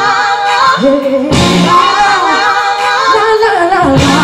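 A woman singing live into a microphone: long held notes that bend and slide in pitch, with music behind.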